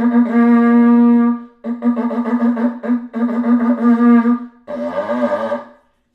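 Animal horn blown like a bugle: a long steady note, then two runs of short repeated blasts on the same pitch, ending in a rougher, wavering note. This is the kind of horn call once used as a warning signal and to drive a herd.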